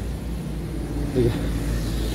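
A low, steady rumble, with a short spoken word about a second in.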